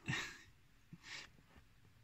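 A person's breathing: a short exhale at the start, then a fainter breath about a second later.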